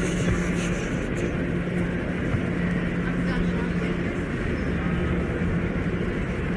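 Steady rumble of a moving vehicle heard from inside, with a low, even hum running underneath.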